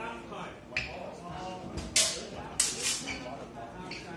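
Swords clashing in a fencing bout: a light knock, then two loud, bright clashes about half a second apart, each with a brief ringing tail.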